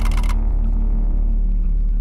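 Music with a beat cuts off shortly in, leaving a steady low rumble of a boat's engine running.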